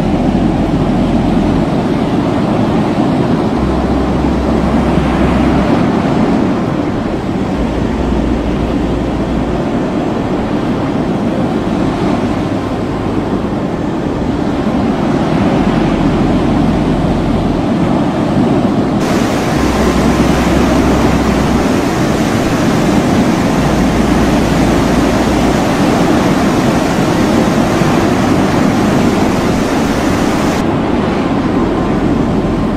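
Seawater rushing and surging through an open hull door onto a ship's flooding lower deck, a loud, steady wash of water. Low steady notes, changing pitch about every two seconds, run underneath.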